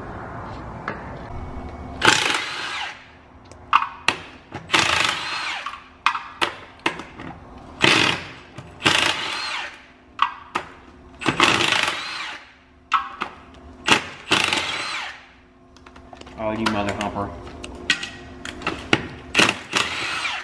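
Cordless impact wrench running bolts out of a five-ton Rockwell axle's brake-drum hub in repeated bursts of about a second each. Sharp metal clinks of bolts and socket fall between the bursts.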